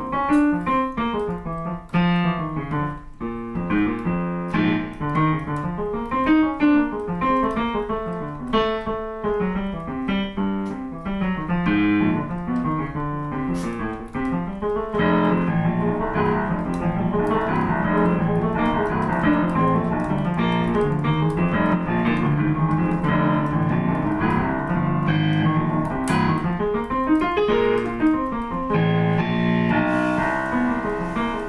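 Yamaha digital piano playing a two-handed boogie-woogie blues improvisation, a bass figure in the left hand under right-hand blues lines. About halfway through the playing turns denser and more even in loudness.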